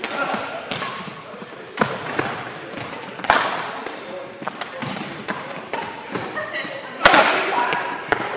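Badminton rackets striking a shuttlecock during a doubles rally, sharp cracks that ring on in the echo of a large sports hall. Softer hits fall between the loud ones, and the loudest strike comes near the end.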